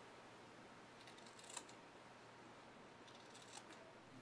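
Faint snipping of scissors cutting through quilt batting: a few cuts about a second in and a couple more near the end.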